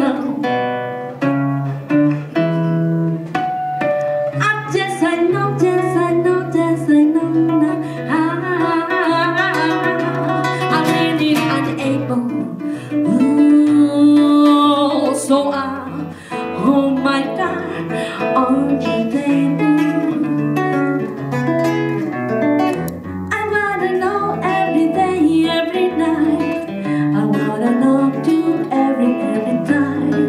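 Live music: a nylon-string classical guitar plucking and strumming chords while a voice sings over a low bass line.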